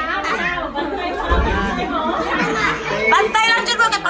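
Several people talking over one another: indoor party chatter, with no single voice standing out.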